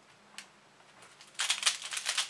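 X-Man Bell magnetic pyraminx turned at speed: a quick, dense run of plastic clacks starts about one and a half seconds in. A single faint click comes just before it, near the start.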